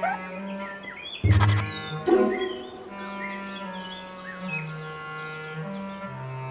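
Cartoon soundtrack: sustained background music with birds chirping throughout, a sudden hit about a second in, and short rising vocal squeaks from a character near the start and again about two seconds in.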